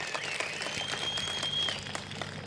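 Audience applauding, many scattered claps, with a faint high tone that rises and then holds for about a second before stopping.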